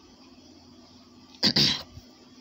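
A man coughs once, a short sharp burst about one and a half seconds in, over faint steady room noise.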